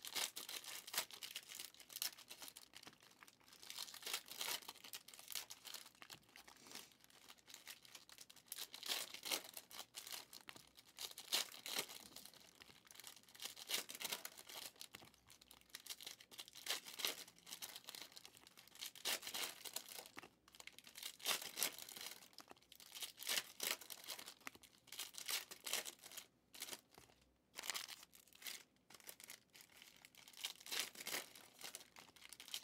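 Foil trading-card pack wrappers being torn open and crinkled, with cards being handled and flicked through. The result is an unbroken run of quiet crinkles and snaps.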